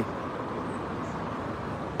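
Faint, steady hum of distant road traffic.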